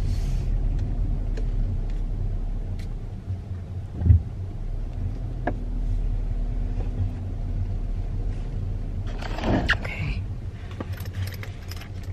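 Inside a car creeping forward at low speed: a steady low engine and road rumble, with a short dull thump about four seconds in and a brief rustling noise near the end.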